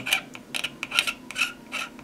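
An X-Acto No. 10 hobby blade scraping along a clear plastic model canopy in a quick run of short strokes, about three a second, shaving down the mould parting-line ridge.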